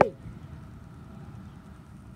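A sharp click with a spoken word right at the start, then faint, steady outdoor background noise: a low even rumble with no distinct events.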